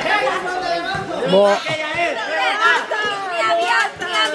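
Several people talking over one another and laughing, a lively group chatter in a large hall.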